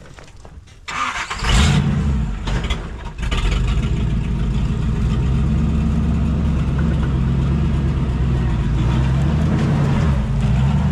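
Jeep Wrangler TJ engine drops away for about a second, then comes back about a second in with a sudden loud rev, and settles into steady running as the Jeep crawls over rocks.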